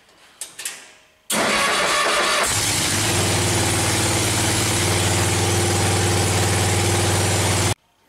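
A few light clicks, then the miniature tank's engine is cranked by its starter for about a second, catches and settles into a steady idle. It starts on a battery left standing for days after an ignition switch was replaced, so the battery has held its charge.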